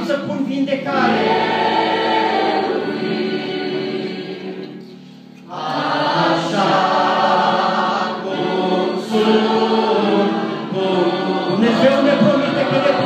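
Large mixed choir of children and young people singing a hymn, with a short break about five seconds in before the singing resumes.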